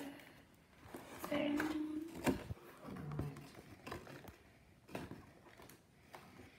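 A doll box and its clips being handled while the doll is worked free: a few sharp clicks and knocks, loudest a little after two seconds, with brief murmured voice sounds.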